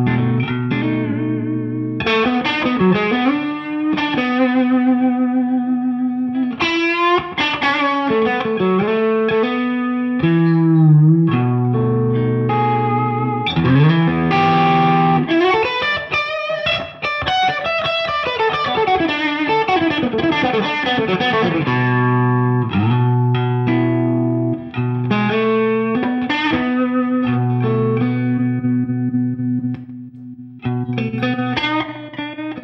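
Fender Custom Shop 70th Anniversary Stratocaster (Journeyman Relic finish) electric guitar played through an amplifier. Single-note lines with string bends alternate with sustained chords.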